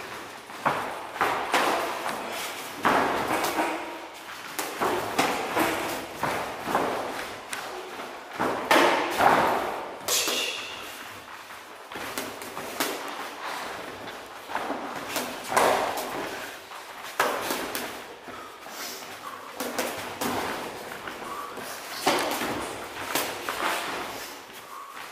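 Kickboxing sparring: irregular thuds and slaps of punches and kicks landing on boxing gloves and a covering guard, echoing in a large hall.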